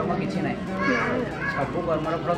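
A man talking to the camera: speech only.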